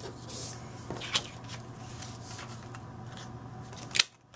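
Faint handling sounds of paper craft supplies on a desk: a few light clicks and taps, the sharpest right at the end, over a steady low hum.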